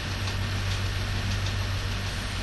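Steady background hiss with a low, even hum underneath, no other events.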